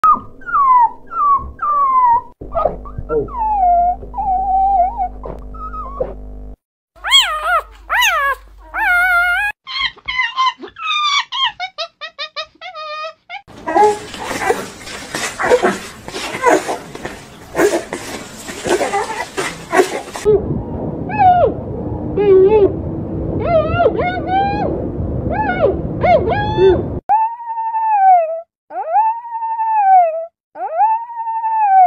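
Puppies whimpering and whining, a string of short high calls that rise and fall, in pieces that change every few seconds; one stretch has a hiss under the calls and another a low hum.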